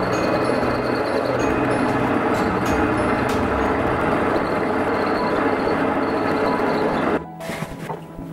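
Metal lathe running with its cutting tool fed into the spinning workpiece, a dense, steady cutting noise that cuts off abruptly about seven seconds in. Background music plays quietly underneath.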